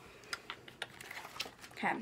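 A handful of light, irregular clicks and taps as small makeup items and packaging are picked up and handled.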